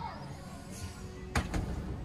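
A thrown football landing with one sharp thud about one and a half seconds in, a missed shot at the target holes, over a steady outdoor background hiss.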